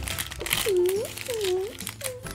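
Crinkly plastic blind bag being torn and pulled open by hand. In the middle a voice makes two short sounds that dip and rise in pitch.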